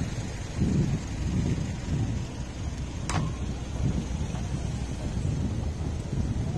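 Wind buffeting the microphone outdoors, an uneven low rumble in gusts, with one sharp click about three seconds in.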